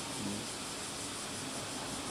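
Quiet, steady hiss of room tone with no distinct events.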